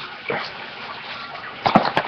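A cardboard box of trading cards being handled and turned close to the microphone: soft rubbing, with a few knocks near the end.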